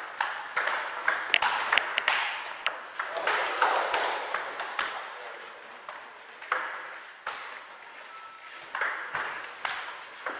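Table tennis ball clicking off paddles and table in a quick rally over the first few seconds, then a few sparser clicks.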